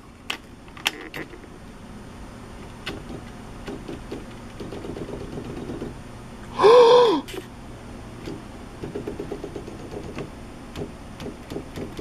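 Smith Corona SD 300 electronic typewriter running with a low steady hum and soft, irregular mechanical clicks. About seven seconds in comes a brief loud tone whose pitch rises and falls, lasting half a second.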